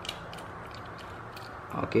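Faint, irregular small metallic clicks and ticks as a precision screwdriver backs the pivot screw out of a folding knife.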